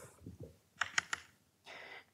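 A few light taps of chalk on a blackboard about a second in, then a faint chalk scratch near the end.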